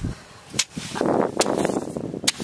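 A hoe chopping into wet, sandy mud on a mudflat: a dull thud at the start, then sharp strikes about half a second and a second and a half in, with crunching of the broken clods between them.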